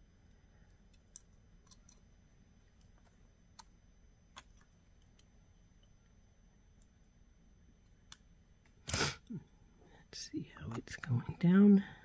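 Faint scattered clicks of nylon-jaw bending pliers and a painted brass stamping being handled as the stamping is bent to shape. A short loud puff comes about nine seconds in, and a low murmured voice near the end.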